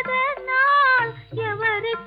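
A woman singing an old Tamil film song in a high voice, sliding between notes over a low instrumental accompaniment, with a brief break in the phrase a little after a second in.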